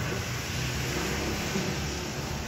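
Steady background hiss with a low hum underneath, the room's ambient noise, with no distinct events.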